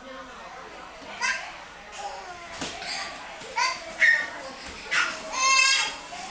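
Babies vocalizing: short, high-pitched squeals and babbles, several times, with the longest and loudest squeal near the end.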